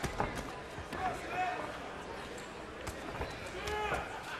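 Boxing arena crowd noise with shouts from ringside, a couple near the middle and one near the end. A few sharp thuds from the ring come near the start and about three seconds in.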